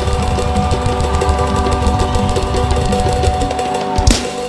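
Loud praise-and-worship music: a church band with a drum kit and held keyboard tones over a heavy bass.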